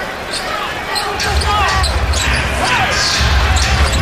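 Basketball game court sound: a ball being dribbled on a hardwood floor and sneakers squeaking in short chirps, over arena crowd noise that swells about a second in.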